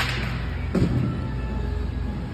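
A sharp knock right at the start, then a duller thud about three-quarters of a second in, over background music.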